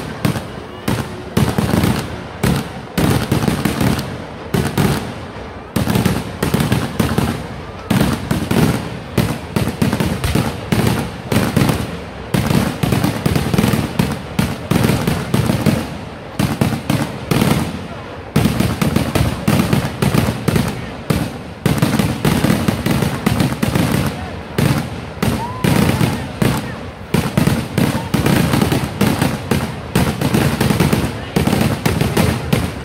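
Kerala vedikettu fireworks: a dense, continuous barrage of bangs from ground-fired shells and crackers, several a second, with a few brief lulls.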